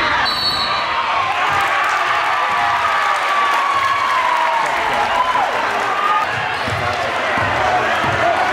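Gymnasium crowd noise, with voices shouting and chattering from the stands and bench. A basketball bounces on the hardwood court, with a few low thumps near the end.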